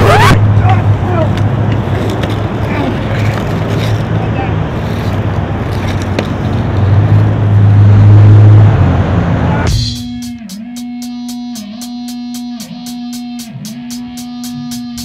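Outdoor street sound with faint voices and a steady low hum. About ten seconds in, a song begins with a regular beat under sustained tones.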